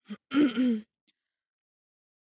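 A woman clearing her throat with a short cough in two quick pushes, brought on by cold, damp air.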